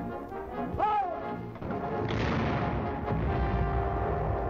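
Orchestral film score with brass playing sustained notes, one note sliding up and back down about a second in. About halfway through, a sudden noisy burst of shellfire joins the music and carries on under it.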